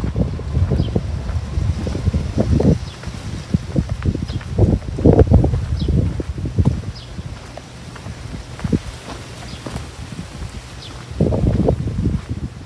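Footsteps on a sandy dirt path, uneven and irregular, with louder stretches about five seconds in and near the end, over a low rumble on the microphone.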